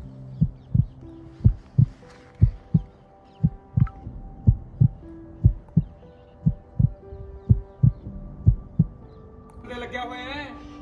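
A heartbeat sound effect: low double thumps, lub-dub, about once a second, laid over held music chords.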